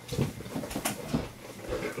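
Soft rustling and a few light, irregular knocks as a pair of sneakers is handled and pulled onto the feet.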